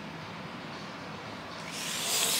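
Quiet room tone, then a brief rustle of clothing and handling near the end as a baby is lifted up.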